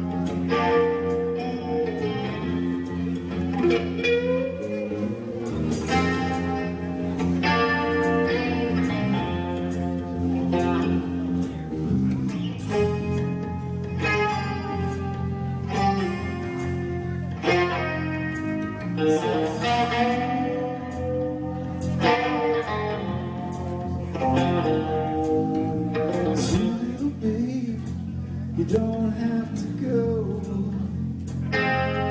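Live rock band playing: electric guitars, bass guitar and drum kit, at a steady loud level with regular drum and cymbal hits.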